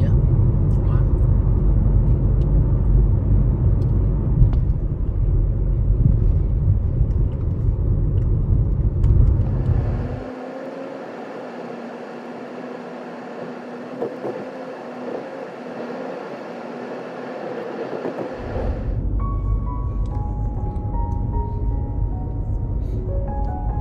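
Low, steady rumble of a vehicle on the move for about the first ten seconds, then a sudden drop to a quieter stretch without the rumble. Near the end the rumble returns under background music with a simple melody.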